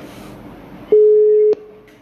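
Telephone line tone: one steady, loud beep about half a second long, starting about a second in and cutting off sharply, over faint line hiss.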